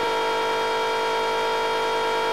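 A cartoon character's scream held at one steady high pitch.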